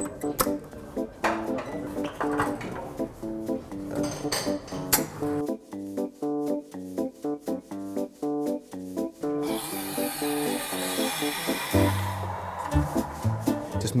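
Background music with a melody of short plucked notes. About nine and a half seconds in, an espresso machine's steam wand hisses for about two seconds as it froths milk in a steel jug.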